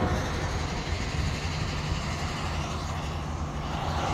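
Steady road-traffic noise: a low vehicle engine rumble and hum under a broad hiss, fading slightly over the few seconds.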